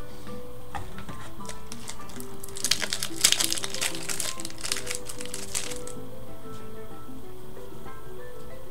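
A trading-card pack wrapper being torn open and crinkled in the hands for about three seconds, starting a couple of seconds in, over steady background music.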